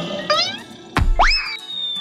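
Cartoon sound effects over music: a quick rising boing, a thud about a second in, then a whistle that shoots up and holds a long, slowly falling tone.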